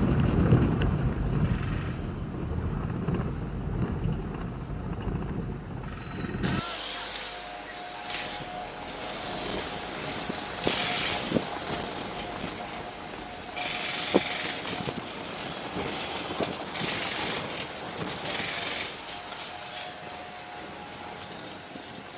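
Road and engine rumble inside a BMW roadster driving over a cobbled street. About six seconds in the rumble drops away suddenly, and high-pitched squealing tones come and go in patches of about a second for the rest.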